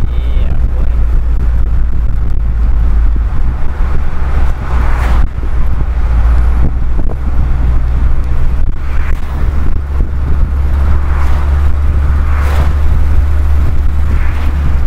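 Car engine and road noise heard from inside the cabin while driving: a loud, steady low drone.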